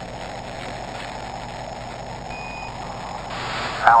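A steady, static-like hum with one short high beep about two and a half seconds in.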